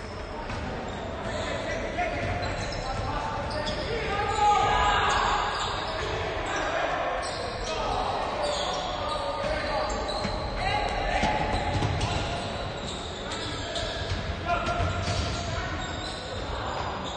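A basketball bouncing on a hardwood gym floor during play, echoing in a large hall, with players' voices calling out over it.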